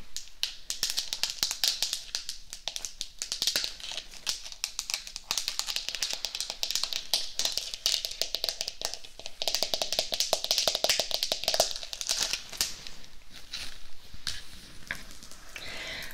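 Long fingernails tapping rapidly on a painted skull-shaped pot, a dense run of quick sharp clicks with short pauses.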